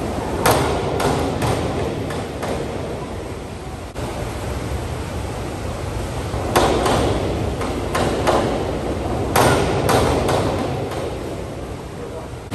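1-metre diving springboard banging and clattering in sharp strokes as divers bounce and take off, in clusters about a second in and again from about six to ten seconds in. The impacts echo around an indoor pool hall.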